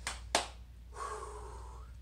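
A man breathing out hard during bodyweight squats, a breathy exhale of about a second starting a second in. Before it come two sharp clicks, the second the loudest, over a steady low electrical hum.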